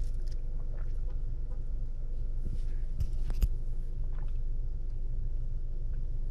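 Steady low rumble of a Honda car's running engine heard inside the cabin, with a couple of small clicks about three seconds in and faint sips through a drinking straw.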